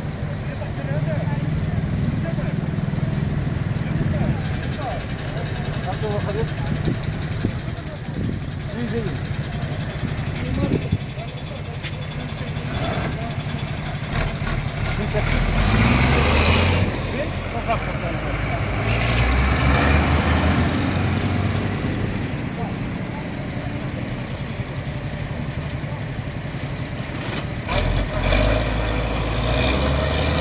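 Small motorcycle engines idling close by. The engine sound swells louder a few times, around the middle and near the end, while people talk over it.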